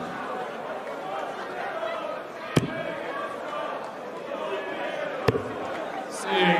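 Two steel-tip darts striking a Winmau bristle dartboard, each a single sharp thud, about two and a half seconds apart, over the steady murmur of an arena crowd.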